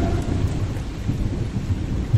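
Steady rain with a low rumble of thunder.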